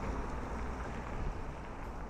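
Steady outdoor street noise: a low rumble under an even hiss, with no single event standing out.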